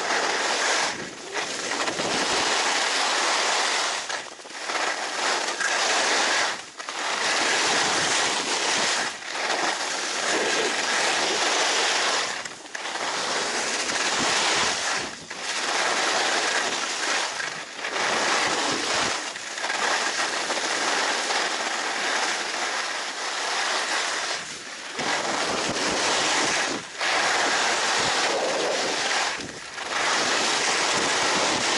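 Skis scraping and hissing over packed piste snow at speed, mixed with wind rushing over the microphone. The rush swells through each turn and dips briefly every two to three seconds between turns.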